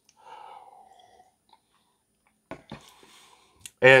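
A man sipping coffee from a mug: a faint slurp in the first second, then a couple of soft clicks.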